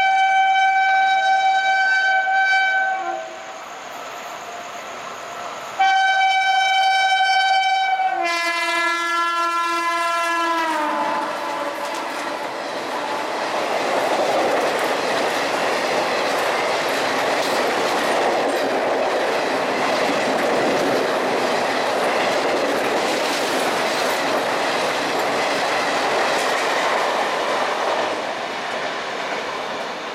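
WAP-7 electric locomotive sounding two long horn blasts as it approaches; the second drops in pitch as the locomotive passes at over 100 km/h. Then comes a steady rushing roar with rail clatter as the express coaches run through at speed, easing off near the end.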